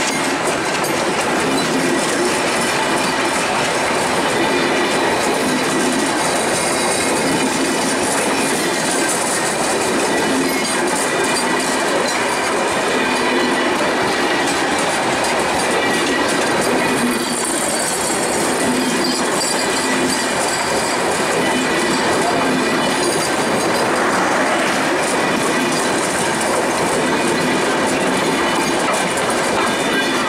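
Bangladesh Railway intercity passenger coaches rolling past at close range: a steady, loud clatter of steel wheels on the rails, with a brief high squeal a little past the middle.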